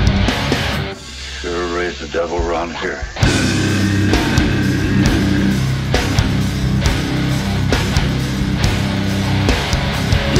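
Live metal band, recorded from the mixing board: distorted electric guitars, bass and drums. The band drops out for about two seconds near the start, leaving a single wavering note, then comes crashing back in.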